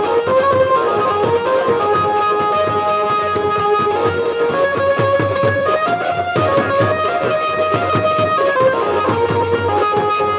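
Live Bhojpuri folk band music: large double-headed drums beat a fast, dense rhythm under a melody instrument that plays a tune in held, stepping notes.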